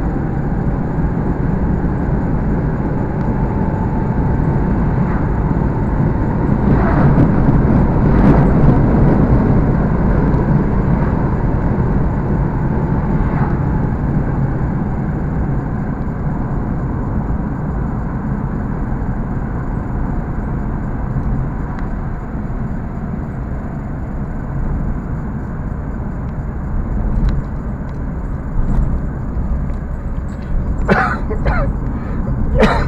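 Steady road and engine noise heard from inside a moving car's cabin, with a louder swell about eight seconds in.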